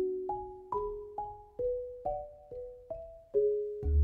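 Solo marimba played with mallets: a melodic line of single notes and two-note chords struck about twice a second, each ringing and fading. A deep bass note sounds near the end.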